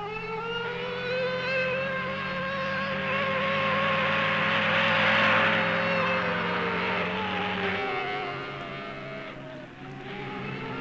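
Motor vehicle driving past: a pitched engine note that rises slowly, swells to its loudest about halfway through and falls away again, over a steady low hum that stops about eight seconds in.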